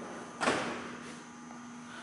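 A single sharp bang or knock about half a second in, fading out over about half a second, over a steady low hum.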